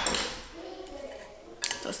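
Kitchenware sounds: a clatter fading out at the start, then a few light knocks of a wooden spatula against a nonstick frying pan near the end as stirring begins.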